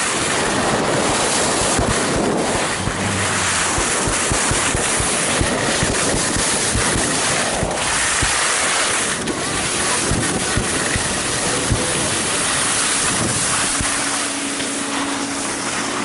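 Heavy wind rushing over an action camera's microphone during a fast descent of a groomed ski slope, mixed with the hiss of sliding over snow. Near the end, as the rider slows at the lift, the rush eases a little and a steady low hum comes in.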